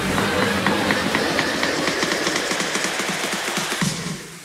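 Music with a dense, hissing texture and rapid short ticks rather than clear held notes.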